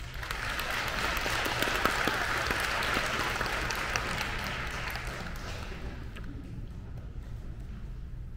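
Audience applauding at the end of a choral piece, quickly building up and then dying away over about six seconds.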